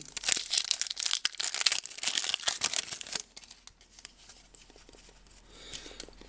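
Shiny plastic wrapper of a Donruss football card pack being torn open and crinkled by hand, a dense crackling for about three seconds that then fades to faint handling.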